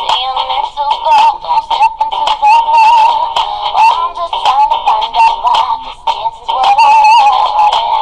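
A pop song playing with a high voice holding long, wavering sung notes over the music. The sound is thin, with almost no bass.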